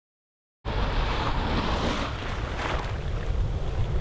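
Silence, then about half a second in, shallow surf washing in at the water's edge, with a swell of wash near the middle. Wind buffets the microphone throughout, giving a heavy low rumble.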